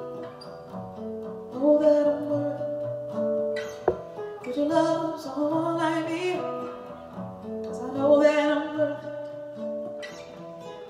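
A woman singing long held notes with vibrato while playing an acoustic guitar. A single sharp click sounds about four seconds in.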